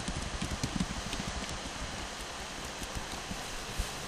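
Computer keyboard typing: a run of faint, irregular key clicks over a low steady background noise.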